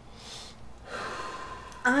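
A man's audible breaths between words: a short breath just after the start and a longer one about a second in, leading straight into speech.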